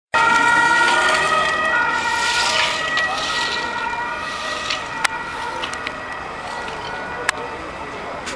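Emergency vehicle siren sounding in steady tones that step in pitch, loudest at the start and fading over the following seconds, with two sharp clicks later on.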